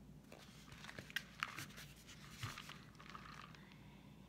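Quiet handling sounds: soft scraping with two sharp clicks just past a second in and a duller knock midway, as a painted gourd is turned on the tabletop and a paintbrush is brought to it.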